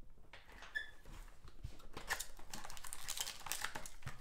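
Hands tearing open a sealed 2020 Panini Obsidian football card box: a dense run of quick crackles from the wrapper and cardboard, getting busier about halfway through.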